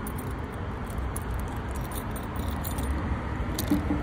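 A bunch of keys jingling and clinking as the ignition key of a Wirtgen 210Fi milling machine is fitted into its switch, over steady low background noise.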